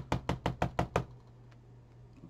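A quick run of knocks, about eight a second for roughly a second, then stopping: a plastic watercolor paint wheel tapped down against paper on the table to shake out its leftover water.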